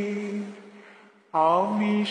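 Unaccompanied solo voice singing a Bengali Islamic devotional song (gojol). A long held note fades away to a brief pause, and the next line starts with a sliding note about a second and a half in.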